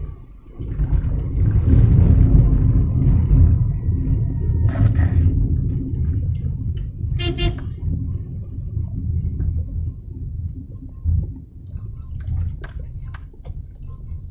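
Low rumble of a car moving through traffic, heard from inside the cabin, loudest in the first few seconds. About seven seconds in, a vehicle horn gives a short double toot.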